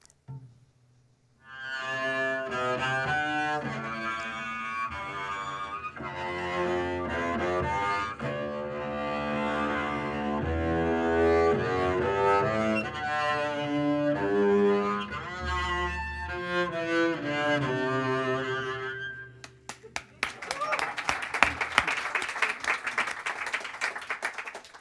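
A short music excerpt on double bass, deliberately played to sound tinny, with bright notes rich in overtones, stopping about 19 seconds in. Audience applause follows for the last few seconds.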